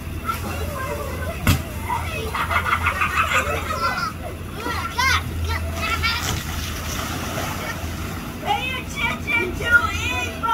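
Children playing and calling out, their voices scattered and indistinct, over a steady low hum. A single sharp knock comes about one and a half seconds in.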